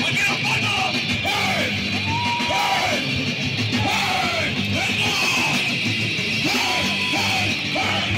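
Ska punk band playing live at full volume, with short yelled vocal phrases over the band and two held shouted notes.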